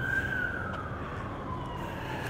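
A siren wailing: one long, unbroken tone that peaks just after the start and then slowly falls in pitch, over steady background noise.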